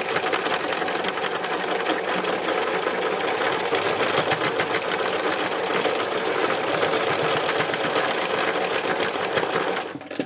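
Domestic sewing machine running steadily at speed for free machine embroidery, the needle stitching in a fast, even run of strokes.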